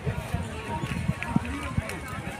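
Indistinct chatter of vendors and shoppers at an open-air vegetable market, too faint to make out words, with scattered low thumps.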